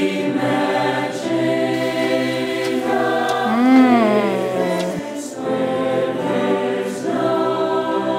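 Small mixed choir of student voices singing in harmony, holding long notes. Near the middle the pitch rises and falls, and there is a short break about five seconds in before the singing resumes.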